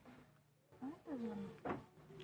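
A drawn-out vocal call that rises and then falls in pitch, followed by a short sharp sound near the end.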